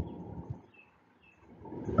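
A pause in speech with only faint low room noise and a couple of soft clicks, dropping to near silence midway.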